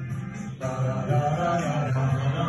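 A class of students singing a song lyric together in unison over music, the singing growing louder about half a second in.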